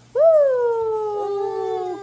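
A woman's long, drawn-out 'awww' held on one breath, rising briefly and then sliding slowly down in pitch.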